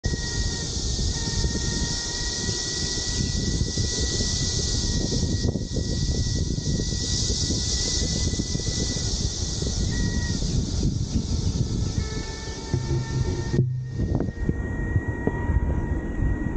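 Pedal surrey rolling along a paved road, a dense low rumble of wind and wheel noise on the camera microphone, with a steady high hiss above it. About three-quarters of the way through, the sound cuts out abruptly for a moment and then resumes.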